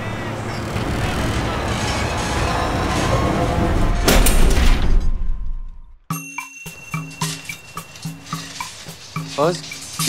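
A rumbling, clattering noise grows louder as a skip is lowered from a skip lorry's chain hoist, peaks in a crash about four seconds in, and dies away. After a moment of silence a music cue starts, with short regular notes over a repeating low bass line.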